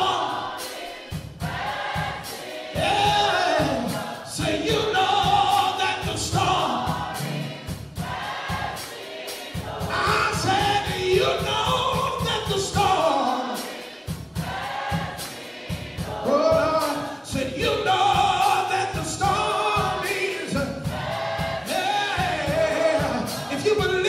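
Gospel choir song with instrumental backing: many voices singing over a steady beat.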